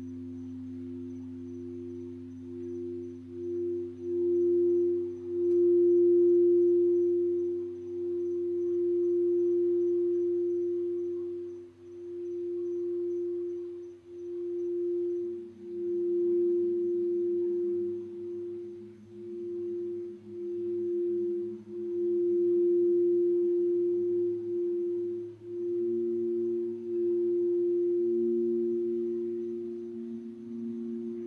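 Crystal singing bowls being sung with a mallet around the rim: a steady pure tone that swells and dips every second or two. A second, lower bowl tone sounds beneath it and shifts to a new pitch about halfway through.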